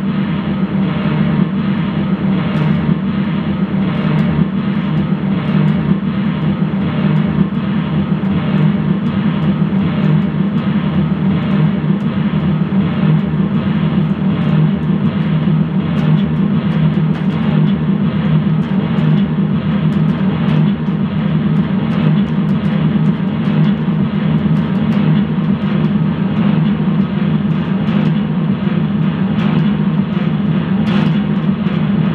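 A loud, unbroken noise-music drone: a dense, low-heavy wall of sound holding steady throughout, with faint crackles scattered over it.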